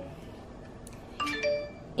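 A short chime: two or three steady, clear tones stepping upward in pitch, lasting under half a second about a second and a quarter in, over quiet room tone.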